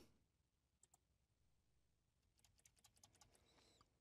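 Near silence, with a few very faint clicks of a computer mouse: one about a second in, then a quick run of them near the end.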